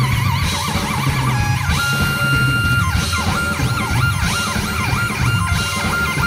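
Live prog-rock band: a synthesizer lead warbles with a wide vibrato and sweeps up and down in siren-like pitch glides over electric bass and drums. About two seconds in the lead settles on a held note, and near the middle it swoops up and down several times in quick zigzags.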